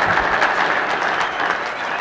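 Audience applauding as a live rock song ends, the clapping slowly tapering off.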